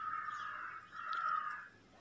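Two faint, harsh, drawn-out animal calls, the second starting about a second in.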